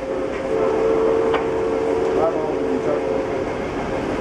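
A locomotive whistle sounds one steady blast of about three seconds, made of two close notes. Under it runs the rumble of the moving train heard inside a railroad car.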